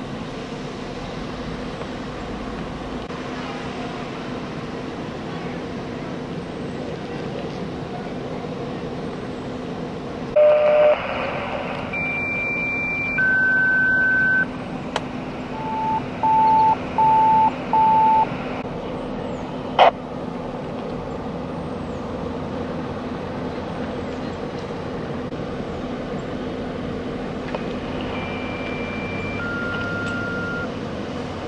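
Fire engines running steadily with a constant hum. About ten seconds in, a radio breaks in with a burst followed by paging tones: a long high tone, then a long lower one, then four short beeps. Another high-then-lower tone pair sounds near the end.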